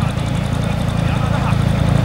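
Vintage farm tractor engine idling steadily, low in pitch.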